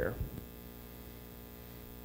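Steady low electrical mains hum from the sound system through a pause in speech, just after the tail of a man's last word at the start.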